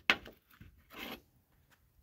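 A thin metal tool scraping and prying against the plastic clip of a Stihl MS 250 chainsaw's air filter cover. There are two short scrapes, the second about a second in.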